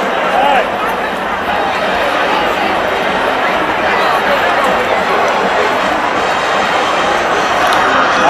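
Large stadium crowd of football fans: many voices shouting, cheering and talking at once in a steady, loud din.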